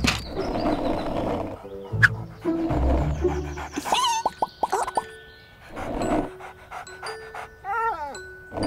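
Light background music with a cartoon puppy's panting and barking, in short breathy bursts, plus a sharp click about two seconds in and short squeaky chirps from the toy characters.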